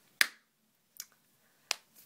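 Three short, sharp clicks: the loudest just after the start, a fainter one about a second in, and another near the end.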